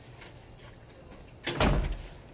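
A door being shut with a heavy thud about one and a half seconds in.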